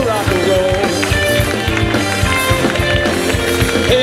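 Live rock band playing, with a steady drum beat under sustained and bending pitched notes.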